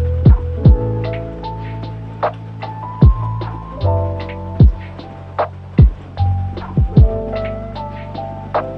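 Instrumental lo-fi hip hop beat: a deep bass line and a kick drum roughly once a second, under soft sustained keyboard chords with snare hits.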